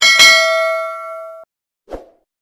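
A notification-bell 'ding' sound effect from an animated YouTube subscribe graphic: a click, then a bright bell ringing with several tones, fading and cutting off suddenly about one and a half seconds in. A short, soft thump comes near the end.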